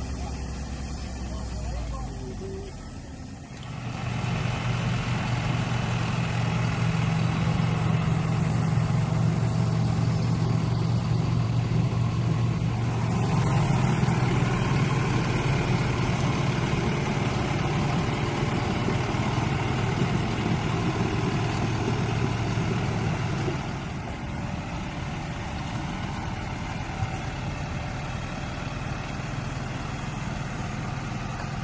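Engine of a truck-based road-rail vehicle running steadily. It comes in strongly about four seconds in and eases down about three-quarters of the way through.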